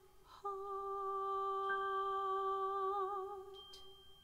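Soprano humming one long, steady note without vibrato, which fades away near the end, with a faint high note held alongside it.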